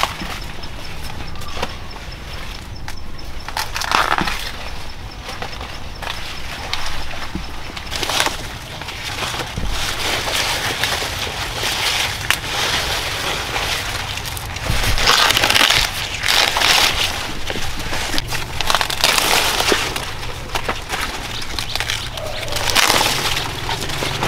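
Corn leaves rustling and brushing as corn is picked by hand, with several louder crackling bursts and sharp snaps of ears being broken off the stalks.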